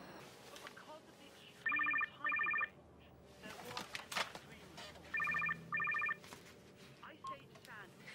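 Mobile phone ringing in a double-ring pattern, two double rings about three and a half seconds apart.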